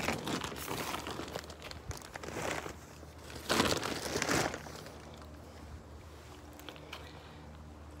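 Plastic mesh greenhouse cover being handled and pushed aside, rustling and crinkling in several bursts during the first half, then quieter.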